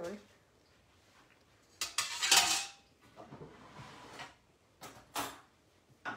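Metal cutlery clattering and ringing as a fork is picked out of a drawer, about two seconds in, followed by two short knocks near the end.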